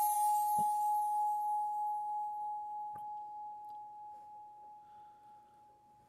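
A struck bowl bell gives one clear, steady tone that rings on and slowly fades away over about six seconds. A high shimmering chime dies out in the first second.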